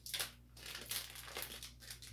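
Plastic packaging crinkling in several short rustles as replacement drive belts for a carpet cleaner are handled and pulled from it.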